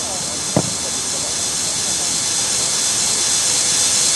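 A football kicked once, a single sharp thud about half a second in, over a steady hiss, with faint distant voices of players.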